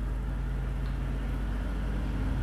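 A steady low hum with no other distinct sound.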